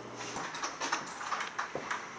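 Quiet handling sounds: soft rustles with a few light clicks and knocks.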